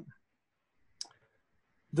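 A single short, sharp click about a second in, in an otherwise quiet pause.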